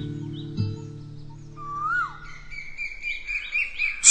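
The last sustained notes of an acoustic guitar ring on and fade out, while birdsong comes in: a single whistled note that rises and falls, then a run of short high chirps that carries to the end.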